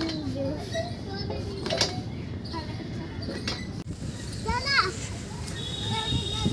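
Children playing: indistinct children's voices and calls, with a couple of short knocks in between.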